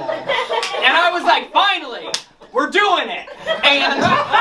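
A man's voice speaking with strongly rising and falling pitch, with one sharp smack about two seconds in.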